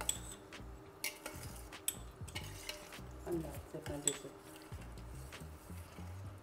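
A spoon stirring a watery mix of vegetables in a stainless steel pot, with faint, irregular clinks of the spoon against the pot.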